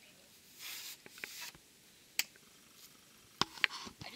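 Scattered sharp clicks and brief rustling, with the loudest clicks coming in a quick pair about three and a half seconds in.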